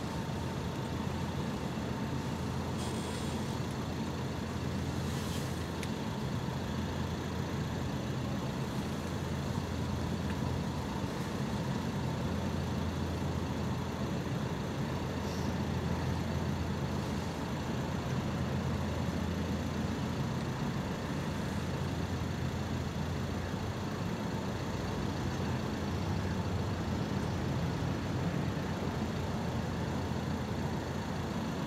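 Steady low rumble of a large cruise ship's engines and machinery as P&O's Aurora passes close by under way.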